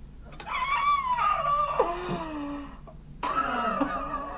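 Laughter: a long, high laugh that slides down in pitch, then another burst of laughing about three seconds in.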